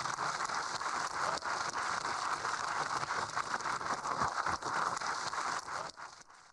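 Audience applauding: a steady clatter of many hands clapping that fades out near the end.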